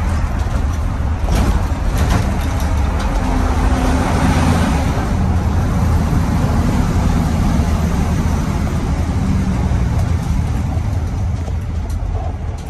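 Cummins 855 Big Cam inline-six diesel of a 1983 Crown tandem-axle bus running steadily under way, heard from the driver's seat with road and tyre noise.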